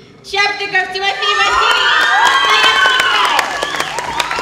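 An audience suddenly bursts into loud cheering and high-pitched screaming about a third of a second in, many voices shrieking at once and holding on, with some clapping.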